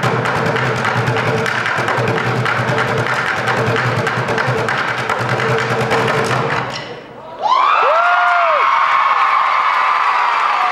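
Buckets drummed with sticks in fast, dense strokes that stop about seven seconds in. The audience then cheers, whoops and applauds.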